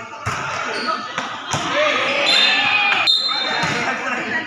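Volleyball bouncing on a concrete court floor three times, with people shouting and talking around it.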